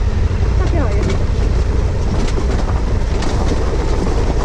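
Wind buffeting the motorcycle-mounted microphone over the low running of a dual-sport motorcycle rolling down a loose gravel track, with stones ticking and crunching under the tyres.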